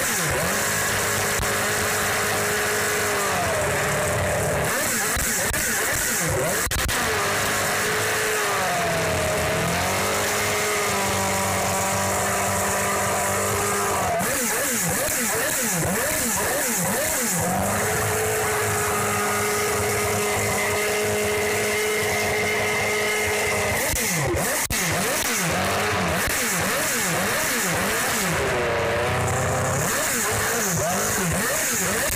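Jordan EJ12 Formula One car's Honda 3.0-litre V10 running on a stand, held at raised revs for several seconds at a time, dropping back and blipped up again in between. It is very loud.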